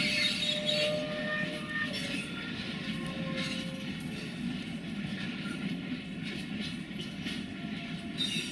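Freight wagons rolling away along the track, a steady rumble of steel wheels on rail. Faint wheel squeal and a few clanks come in the first few seconds.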